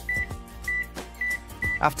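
Key-press beeps from an Inmarsat iSatPhone Pro 2 handheld satellite phone as a phone number is typed on its keypad: four short, high beeps at one pitch, about half a second apart.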